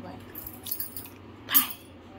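Light, scattered metallic clinks and jingles, with one louder short sound about one and a half seconds in.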